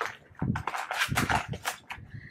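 Paper and cardboard packaging rustling and scraping in quick, irregular bursts as a folded paper user manual is pulled out of a product box.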